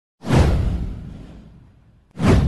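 A whoosh sound effect with a deep low rumble under it. It starts suddenly a moment in, slides down in pitch, and fades out over about a second and a half.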